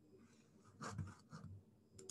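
Near silence with room tone and a few faint, short scratchy rustles a little under a second in.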